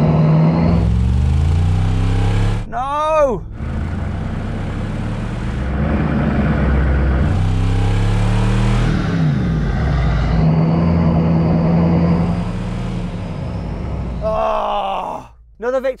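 Off-road 4x4 engines running hard under load in a rope tug of war, their revs rising and falling in steps, while spinning wheels churn the grass. A strained vocal cry comes about three seconds in.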